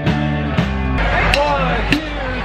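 Live rock band playing amplified on stage: electric guitars and bass over a drum kit, with a sharp drum hit about twice a second. The chord changes about a second in.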